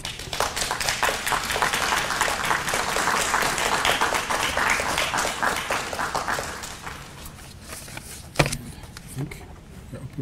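An audience applauding: the clapping swells, peaks in the middle and dies away after about seven seconds. A single sharp knock follows about eight seconds in.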